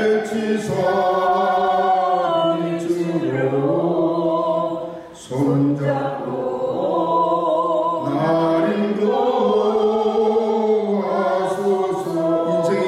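A congregation singing a slow hymn together in long held phrases, with a brief breath pause about five seconds in.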